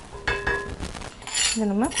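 Steel ladle scraping and clinking against a cast-iron pan while scooping up dry-roasted split moong dal, with a short metallic ring early on and a dry rattle of grains about halfway through.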